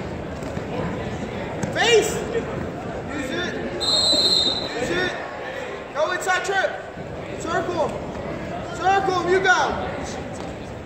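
Coaches and spectators shouting short calls at wrestlers in a large gym hall, in several separate bursts. About four seconds in, a steady high squeal lasts about a second.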